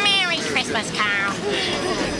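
A man's very high-pitched, excited voice giving two sliding cries about a second apart, over other voices.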